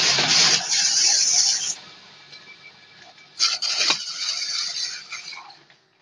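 Coconut trimming machine's cutter shaving the green husk off a young coconut: a loud, rough scraping that eases off about two seconds in and returns for a second pass about three and a half seconds in.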